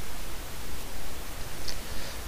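Steady, even hiss with a faint low hum underneath: the background noise of a voice-over microphone recording.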